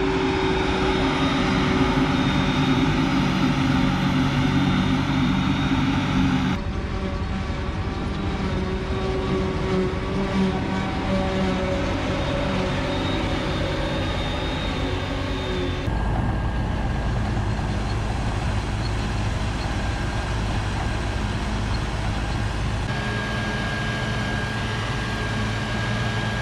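Diesel engines of a Claas Jaguar self-propelled forage harvester and the tractors hauling its forage wagons, running steadily under load while chopping sorghum. The engine note changes abruptly about six, sixteen and twenty-three seconds in.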